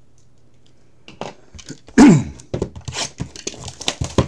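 A man clears his throat loudly about halfway through, then card packaging is handled, crinkling and tearing as a box of trading cards is opened.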